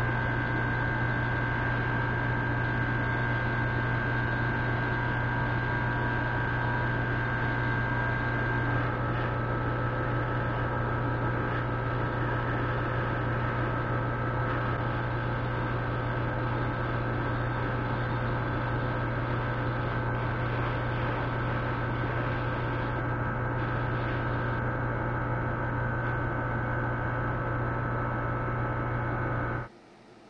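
Hobby spray booth's exhaust fan running with a steady hum, over an even hiss of air from the airbrush spraying. The sound cuts off abruptly near the end.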